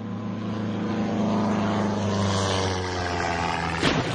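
Sound effect of a small propeller plane's engine droning, its pitch swelling and sagging slightly, cut by a sudden crash-like hit near the end: a radio caller-dump gag standing for JFK Jr.'s plane crash.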